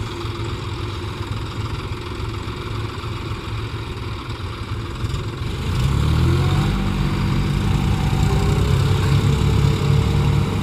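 Diesel tractor engines running at idle; about six seconds in, one revs up, its pitch climbing and then holding at higher speed, louder, as the tractors work to pull a tractor stuck in deep mud.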